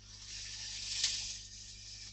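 A soft, steady high-pitched hiss that swells slightly about a second in.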